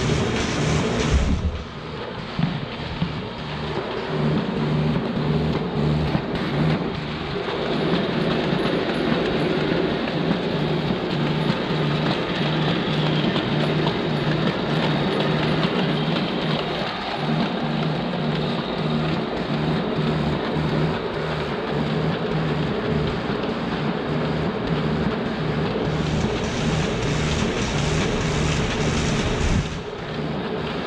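Morgana UFO crossfolder paper folder running: steady motor and roller noise with a regular, rapid beat as sheets are fed through and folded.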